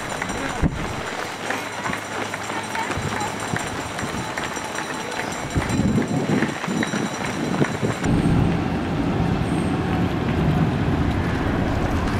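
Footsteps of a large field of marathon runners on an asphalt road, a dense patter of many feet over street noise. About eight seconds in, the sound changes abruptly to a steady low rumble.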